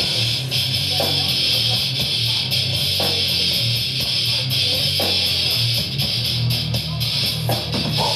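Live metal band playing loud and without a break: distorted electric guitars and bass over drums, with rapid cymbal hits.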